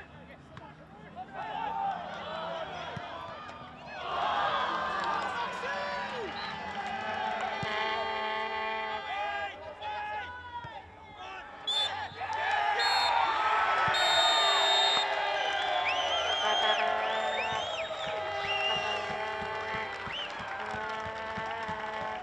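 Players shouting and calling to each other on a football pitch during open play. A high, shrill referee's whistle blast comes about two-thirds of the way through.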